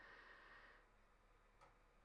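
Near silence: room tone, with a faint hiss in the first second and one tiny click near the end.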